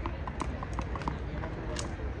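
A quick run of light taps, about six or seven a second, through the first second, then one sharper crack near the end, over a low murmur of background noise.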